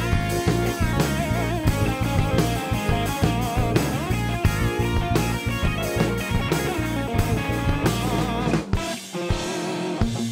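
Live blues-rock band playing an instrumental passage: electric guitar with bent, wavering notes over a drum kit. The deep low end drops out about nine seconds in.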